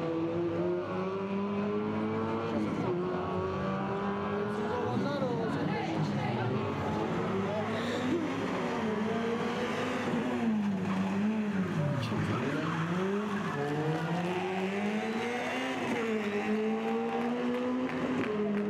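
Peugeot 106 rally car's four-cylinder engine revving hard, its pitch climbing and falling again and again as the car accelerates, lifts off and changes gear through a tight section. There are sharp dips and recoveries in the revs between about ten and thirteen seconds in.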